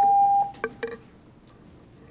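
An electronic beep from the podium's speaking timer: one steady, fairly high tone lasting under a second and cutting off sharply. Two short clicks follow, then faint room noise.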